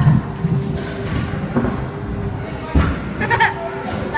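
Indistinct voices echoing in a large indoor skatepark hall, with two dull thumps, one about one and a half seconds in and one near three seconds.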